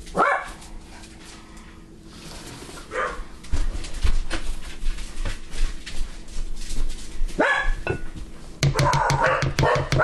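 A dog barking several times in short bursts, with a quicker run of barks near the end.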